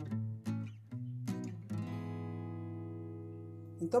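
Background acoustic guitar music: a few plucked notes, then a chord left ringing and slowly fading.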